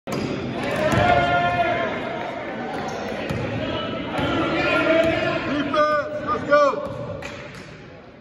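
Basketball game in a gym: a ball bouncing, sneakers squeaking on the court with two sharp squeaks about six seconds in, and shouting voices, all echoing in the large hall.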